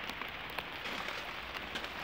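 Steady rain falling on a garden, with the odd sharper tick of a single drop.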